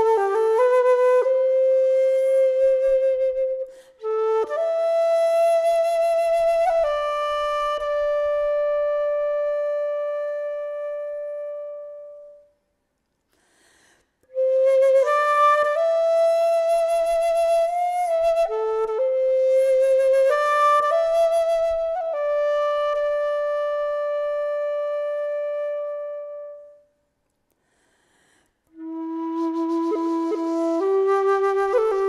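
Solo keyed wooden Irish flute playing a slow air: long held notes in unhurried phrases, breaking off for a breath-length silence about halfway through and again near the end.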